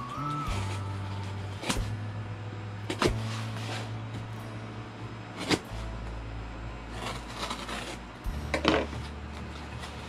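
A folding knife slitting packing tape on a cardboard box, with a few sharp knocks and taps on the box and a scratchy cutting sound near the end, over background music with a slow bass line.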